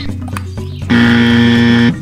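A wrong-answer buzzer sound effect: one flat, steady buzz about a second long, starting about a second in and cutting off sharply, over light background music. It marks a mismatched answer.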